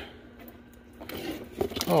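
Quiet handling noise as an LED work light and its loose wire leads are turned over by hand: a few small clicks and rustles, mostly in the second half.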